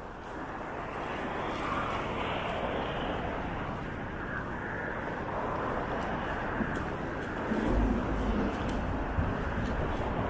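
Steady road traffic on a wide, busy city avenue, a continuous wash of car engines and tyres that grows a little louder over the first couple of seconds. A deeper, louder rumble swells briefly about eight seconds in.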